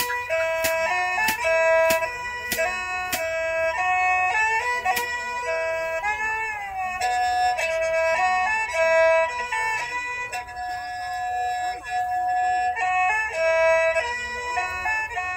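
Background music: a reedy wind-instrument melody of held notes stepping between pitches, with a steady tapping beat for the first five seconds or so.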